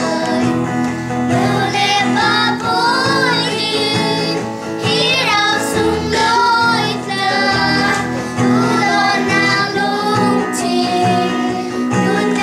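A small group of children singing a song together, with instrumental accompaniment underneath.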